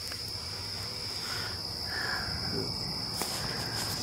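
Crickets trilling in a steady, high-pitched chorus.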